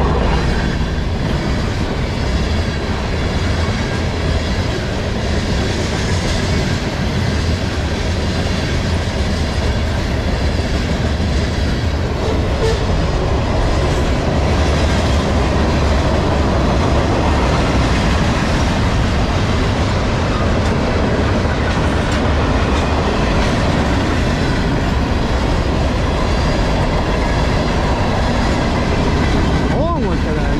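Freight train cars rolling past close by: a loud, steady rumble and clatter of steel wheels on the rails.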